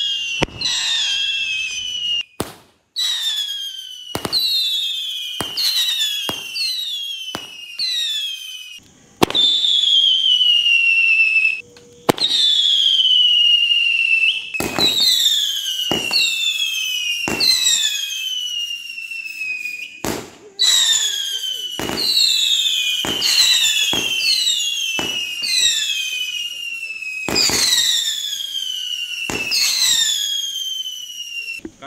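Dozens of Diwali sky rockets going off in quick succession, each giving a shrill whistle that falls in pitch over a second or two, many overlapping. Sharp bangs and cracks burst in among the whistles.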